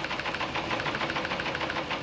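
Teleprinter typing out a wire dispatch: a rapid, steady mechanical clatter of the print mechanism.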